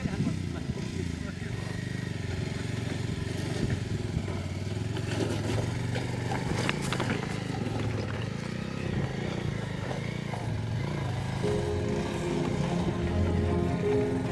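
Motorcycle engine running at low speed as the bike picks its way over loose river stones, with a few sharp knocks along the way. Background music comes in near the end.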